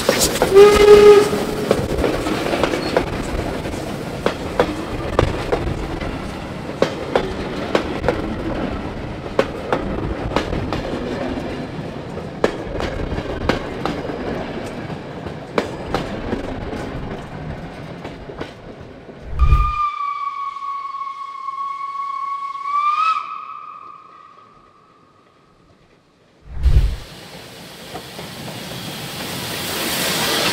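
Steam train passing close by: wheels running over the rails with many sharp clicks, and a loud locomotive whistle blast about a second in. Later a single steady steam whistle blast of about three seconds, rising slightly in pitch as it ends, after which the sound drops low for a few seconds before the rolling train noise returns.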